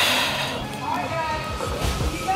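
A woman's heavy sigh of exertion at the very start, straining through single-leg bridges under blood-flow-restriction cuffs, followed by soft background music.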